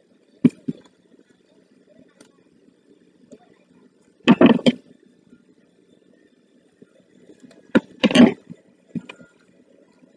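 Small paper strips being handled and cut with household scissors: a few light clicks, then two louder crisp bursts of rustling and snipping about four and eight seconds in.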